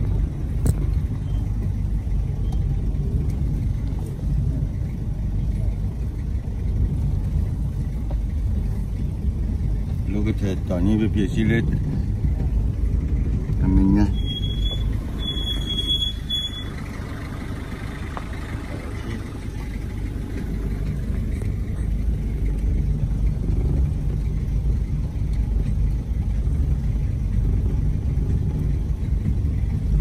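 Steady low engine and road rumble inside a car's cabin as it drives slowly over a rough dirt track. About halfway through there is a brief, high-pitched tone in a few short pieces.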